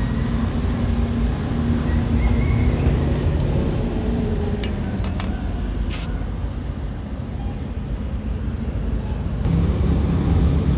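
A steady low mechanical rumble with a faint hum, with a few short sharp clicks about halfway through.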